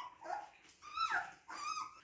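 Young Siberian husky puppy whimpering: three short, high-pitched whines, each rising and falling, the loudest about a second in.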